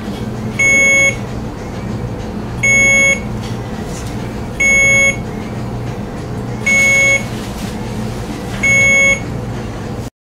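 Alaris infusion pump sounding its Check Syringe alarm for the syringe module. It gives a short electronic beep about every two seconds, five beeps in all.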